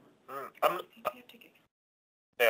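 A person clearing their throat and making a few quiet voice sounds, well below the level of the surrounding talk.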